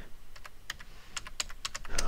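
Computer keyboard being typed on: a quick run of separate key clicks as a word is entered letter by letter.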